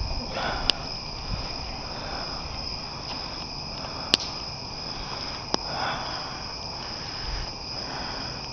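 Crickets chirping steadily at night, with a wood campfire crackling in a metal fire ring and giving three sharp pops, about a second in, about four seconds in and about five and a half seconds in.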